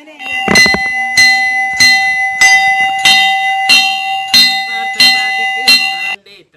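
Brass temple bell rung by hand in a steady rhythm, about nine strokes a little over half a second apart. Each stroke leaves a clear ringing tone that carries on into the next.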